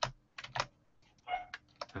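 Keystrokes on a computer keyboard: about half a dozen separate key clicks at an uneven pace, some in quick pairs.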